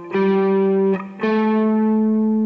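Clean electric guitar playing single sustained notes of a major-scale finger pattern, each a whole step above the last. One note rings for under a second, and a higher one starts about a second in and rings on.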